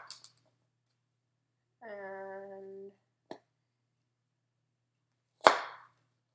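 Plastic Pop Chef cutter tube pushed down through stacked cantaloupe slices, with sharp knocks as it meets the cutting board: a light click just after three seconds in and a loud knock near the end.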